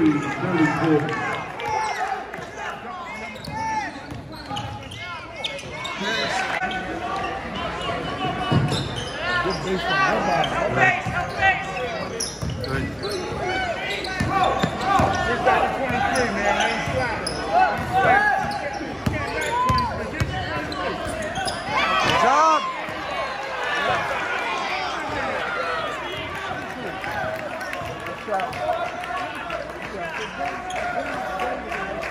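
Live high school basketball play in a school gymnasium: the ball being dribbled on the hardwood floor and sneakers squeaking, with many short squeaks throughout and a louder cluster about two-thirds of the way through. Spectators talk in the stands underneath.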